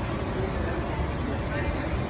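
Indistinct voices over a steady, noisy background, with no clear music.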